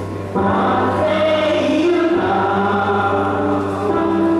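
Choir singing gospel music in held, sustained chords over a low bass note, with a new chord entering about a third of a second in.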